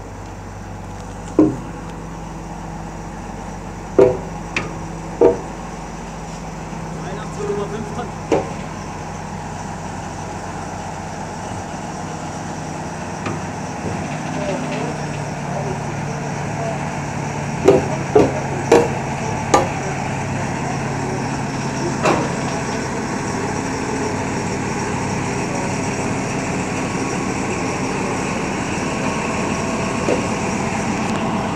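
Small DR class 102 diesel shunting locomotive running as it pushes a coupled electric locomotive, its engine drone growing steadily louder as it draws near. Sharp knocks come through the drone, scattered at first and then a quick run of four about two-thirds of the way through.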